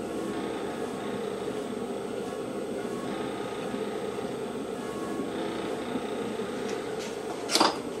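Electric potter's wheel running with a steady hum while hands shape a clay bowl turning on it. A short noise comes shortly before the end.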